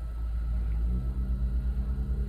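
Low, steady rumble of a car heard from inside the cabin, with a steady low drone joining about a second in.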